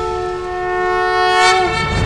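Several horns sounding together in one long held chord, which sags in pitch and breaks off near the end.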